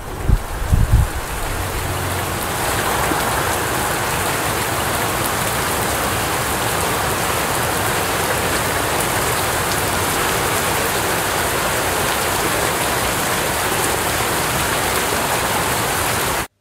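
Wind buffeting the microphone for the first second, then a steady hiss of heavy rain that swells over the next two seconds and holds evenly.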